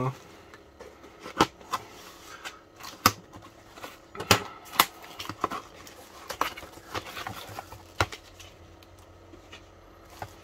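Cardboard parcel being cut open with a snap-off utility knife and its flaps pulled apart: a handful of sharp clicks and cracks of the blade through packing tape and cardboard, with rustling of the cardboard and bubble-wrapped packages being handled.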